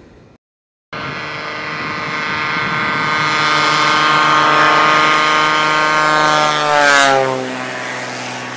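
Single-engine crop-dusting airplane taking off: the drone of its engine and propeller starts about a second in, grows louder as it approaches, then drops in pitch as it passes by near the end.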